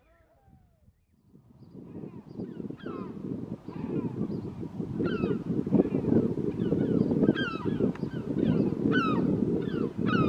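Bald eagles calling: runs of short, high-pitched notes, each falling in pitch, several a second, starting about a second and a half in and growing louder, over a steady low rumble.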